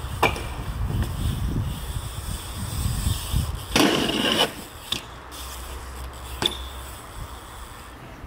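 BMX bike riding a concrete skatepark: tyres rolling with a low rumble, a sharp clack as the bike hits a metal rail, then a half-second scraping grind along a ledge, followed by two more short clacks of the bike landing.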